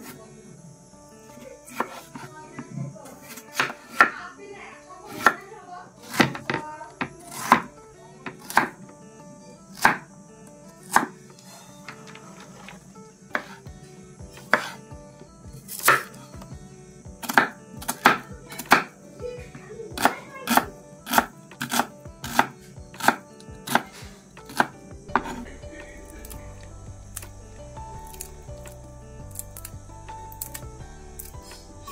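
Kitchen knife chopping a potato and then an onion on a wooden chopping board: irregular knocks of the blade on the board, one or two a second. The chopping stops a few seconds before the end.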